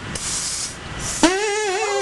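Hard blowing through a flattened plastic drinking straw with a V cut into its end, used as a homemade duck call. First there is a breathy rush of air, then a little past halfway the two points of the V start to vibrate and the straw sounds a steady, duck-like honk.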